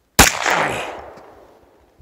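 A single shot from a semi-automatic pistol: one sharp crack a fraction of a second in, with its echo trailing away over about a second.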